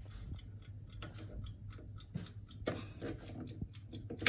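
Clock-like ticking, even and several ticks a second, over a low steady hum.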